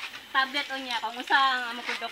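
Speech: a person talking in a high-pitched voice, with a faint hiss behind.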